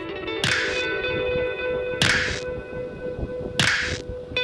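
Background music: held chords with three sharp, whip-like percussive hits, about one every second and a half.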